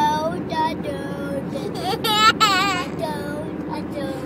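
A young boy singing a made-up tune without clear words, breaking into a high, wavering note about two seconds in. Steady road noise of a moving car's cabin runs underneath.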